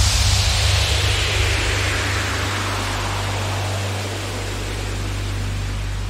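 A DJ transition effect in an electronic dance mix: a white-noise sweep falls steadily in pitch over a held low bass tone, with no drum beat.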